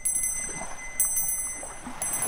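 Tibetan Buddhist hand bell rung about once a second, each strike leaving high, clear tones ringing on, over the wash of surf.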